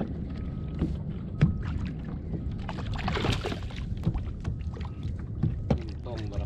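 Steady low rumble of wind and water around a plastic fishing kayak, with irregular sharp clicks and knocks from handling the rod and reel. A brief rush of noise comes about three seconds in.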